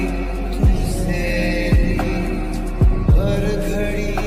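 Slowed-and-reverb Bollywood lofi music: a deep kick drum that drops in pitch, hitting about once a second with a quick double hit near the end, under sustained pad chords.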